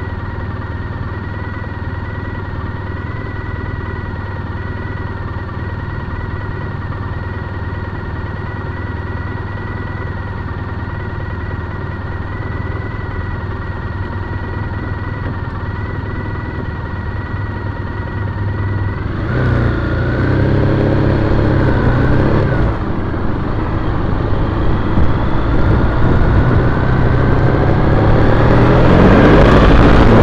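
A 2010 Triumph Bonneville T100's 865 cc air-cooled parallel-twin engine idling steadily in stopped traffic. About twenty seconds in it grows louder for a few seconds. Near the end it rises in pitch and loudness as the bike accelerates away.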